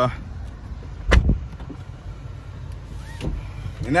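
Dodge Avenger engine idling with a steady low hum, heard from inside the cabin; it is misfiring, with the check-engine light flashing. A single sharp thump about a second in.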